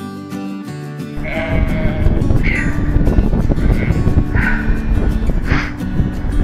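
Acoustic guitar music. About a second in, outdoor sound cuts in under it: a low rumbling noise and sheep bleating several times.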